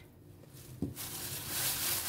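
A light knock as a cardboard carton is set down, then plastic grocery bags rustling and crinkling as a hand rummages in them, growing louder through the second half.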